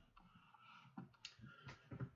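Near silence with a few faint clicks in the second half.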